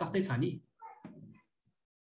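A man's voice speaking for about half a second, then a faint short sound and silence.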